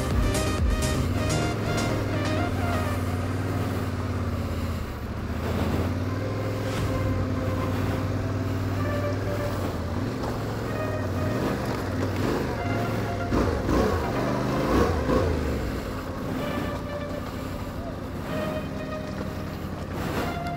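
Yamaha Ténéré 700 parallel-twin motorcycle engine running at low speed, its revs rising and falling several times in the second half, mixed with electronic background music.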